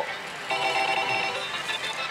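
Versus pachislot machine giving off steady electronic ringing tones, several notes held together, starting about half a second in over the hum of the hall.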